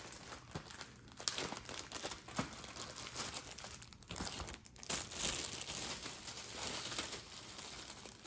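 Paper and plastic packaging crinkling and rustling as it is handled and pulled out of a cardboard box, with scattered sharp crackles.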